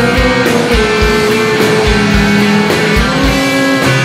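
Rock band playing live: electric guitars and bass over a steady kick drum and cymbals, with a lead line of long held notes that step in pitch. No singing.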